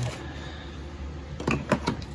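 A few short knocks and clicks close together, about three-quarters of the way in, from a desk power-outlet strip and its cord being handled on a workbench. A steady low hum runs underneath.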